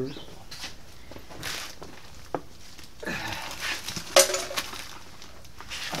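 Small metal mounting screws and hardware being handled on a TV mount plate, with light clinks and a sharper knock about four seconds in.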